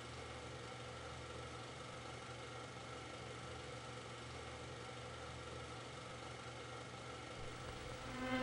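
Faint steady low hum with a light hiss: room tone, with no distinct event.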